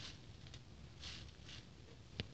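Near silence with a few faint, soft rustles about a second in.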